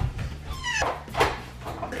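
A toddler's short, high-pitched squeal that falls in pitch, a little after half a second in, followed by a fainter vocal sound about a second in.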